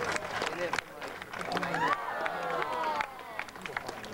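Indistinct talking, with scattered sharp clicks throughout.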